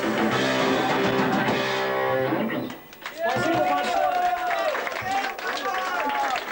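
Live hardcore band playing loud distorted electric guitar with drums, holding a sustained chord that cuts off about two and a half seconds in. Shouting voices and scattered claps follow.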